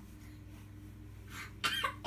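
A short cough about one and a half seconds in, over a faint steady low hum.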